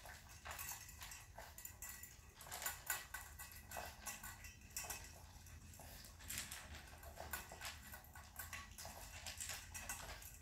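French bulldog eating fast from a stainless steel bowl: a quick, irregular run of chewing and clicking sounds against the metal.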